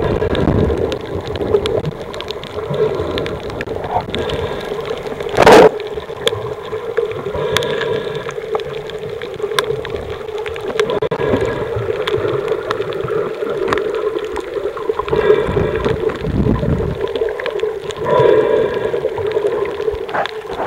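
Underwater sound picked up by a camera moving over a shallow coral reef: a steady hum with many scattered crackling clicks, a brief loud burst of noise about five and a half seconds in, and some low rumbling near the end.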